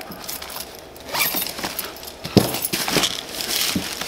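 Zipper of a small fabric pouch being run along its track, with rustling of nylon bag fabric and one sharp click a little past halfway.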